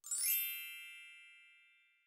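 A bright sparkling chime sound effect: a quick upward run of bell-like notes that rings on and fades away over about a second and a half.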